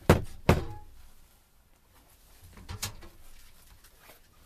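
Knocks: two sharp ones about half a second apart, then a few smaller ones near three seconds in.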